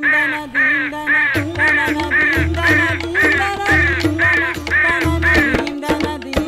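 Cartoon background music with a steady bass beat, overlaid by a repeated bird-like squawking call about twice a second.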